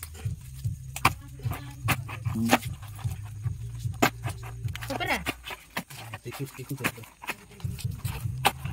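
Dry insect nest comb cracking and crunching as it is broken apart by hand and with a knife: many short sharp cracks at irregular intervals. A steady low hum runs beneath them and fades out about five seconds in.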